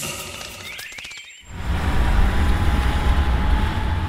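A few short rising chirps like birdsong, then from about a second and a half in, a car driving by with a steady low rumble and road noise that fades near the end.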